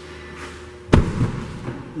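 A car door shutting with a single solid thud about a second in, followed by a short rumbling decay.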